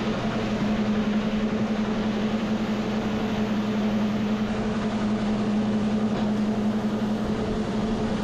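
Grain-handling machinery running steadily: an even mechanical rush with a strong, constant low hum that does not change.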